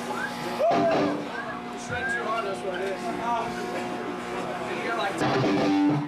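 Electric guitars ringing and humming through their amps between songs of a live hardcore band, with crowd voices shouting over them; near the end the band kicks in with drums.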